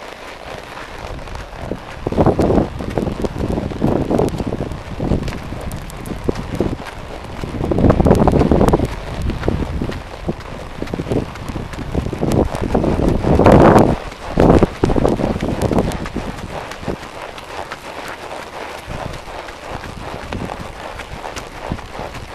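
Wind buffeting the microphone in uneven gusts over the footfalls of a quarter horse walking on a dry dirt trail, with a string of light clicks from the hooves.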